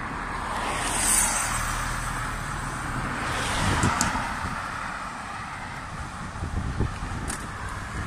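Road traffic: cars passing close by in the near lane, the noise swelling as one goes past about a second in and again as a minivan passes nearly four seconds in, over a steady hiss of tyres and engines.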